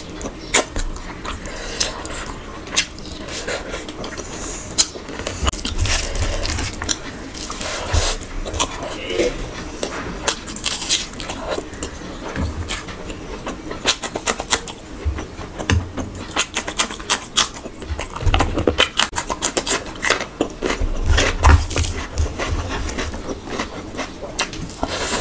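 Close-miked eating by hand: chewing and lip-smacking with many quick, sharp mouth clicks, and fingers squishing and mixing rice.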